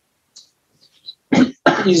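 A person gives one short cough about a second and a half in, right before speech begins.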